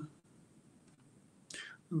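A pause between spoken lines: near silence, then about a second and a half in, a short breath drawn in just before speech starts again.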